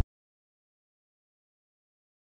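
Complete silence: the audio is dead quiet between two pieces of background music.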